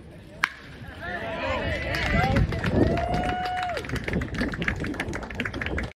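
A baseball bat strikes a pitched ball with one sharp crack, followed by people shouting and cheering loudly, including one long held yell.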